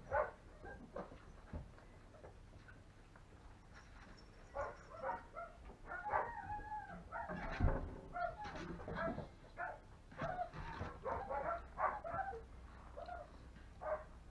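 Five-week-old German Shepherd puppies whining and yipping: a string of short, high calls that bend in pitch, starting a few seconds in.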